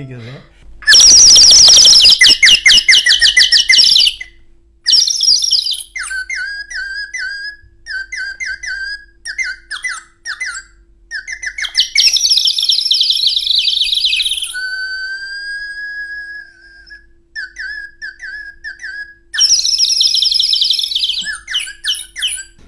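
A man imitating bird calls by whistling with his mouth. There are three loud, rapid trills, with runs of short repeated chirps between them and one long steady whistled note partway through.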